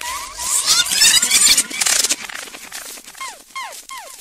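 Electronic dub-siren effects over a reggae dubplate mix: a dense, noisy first half, then a rapid run of falling 'laser' sweeps, about three a second, through the second half.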